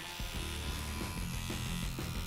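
Rotary tattoo machine running with a steady electric buzz.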